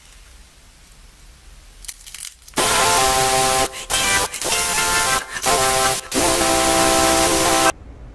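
Quiet for the first couple of seconds, then a loud, harsh glitch sound effect: static with a steady buzzing, horn-like chord. It drops out briefly four times and cuts off suddenly near the end.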